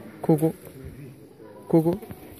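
A person's voice: two short murmured sounds, about a second and a half apart.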